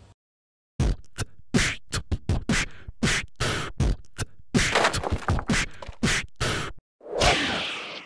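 A quick, irregular run of sharp percussive hits and slaps, some twenty in about six seconds. It ends in a longer sound that swells and rings on near the end.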